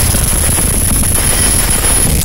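A loud, dense wash of noise in an electronic noise-music track, with a steady low rumble and a thin, steady high whine; it resembles the drone of a helicopter.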